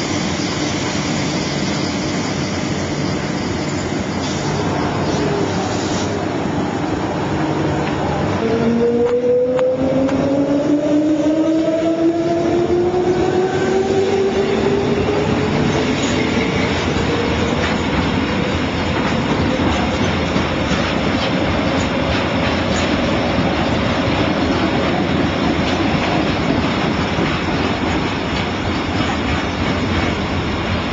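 Trains running through a station: a Queensland Rail Citytrain electric suburban train moving past, then an intermodal freight train of container wagons rolling by, with steady rail and wheel noise throughout. About a third of the way in, a whine starts and rises slowly in pitch before levelling off.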